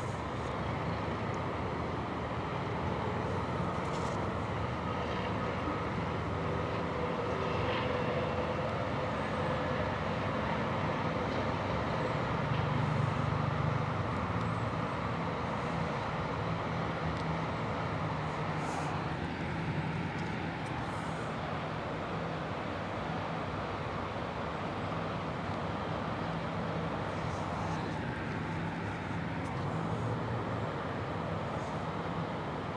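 Steady low outdoor rumble of distant traffic, swelling slightly about twelve seconds in.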